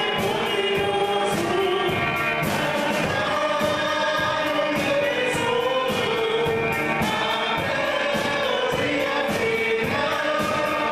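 A hymn sung by a congregation, led by a woman's voice on a microphone and backed by a drum kit and electric guitar, the drums keeping a steady beat on the cymbals.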